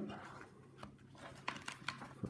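Faint paper handling as a loose sheet is taken out of a notebook, with a few soft clicks and taps.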